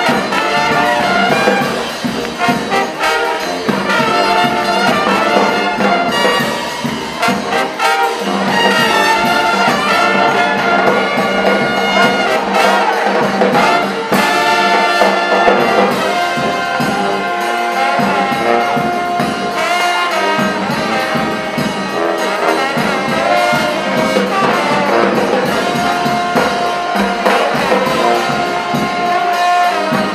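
A brass band playing live, with trumpets, trombones, saxophone and sousaphone together in a jazz style.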